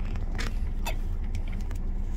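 Steady low rumble of road and engine noise inside a moving car's cabin, with a couple of faint short clicks.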